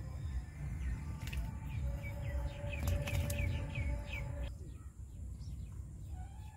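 A bird calling a quick run of short, falling chirps, about eight in two seconds, over a steady low rumble.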